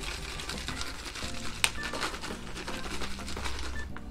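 Charcoal pieces poured from a cut plastic bottle into a pot of soil: a dense run of small clicks and rattles, with one sharper click about a second and a half in. Background music plays underneath.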